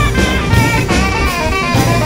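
Live jazz band playing: a saxophone plays a bending melodic line over a busy drum kit and band accompaniment.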